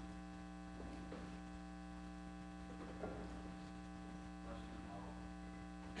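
Steady electrical mains hum on the recording, with a few faint, scattered sounds from the seated audience.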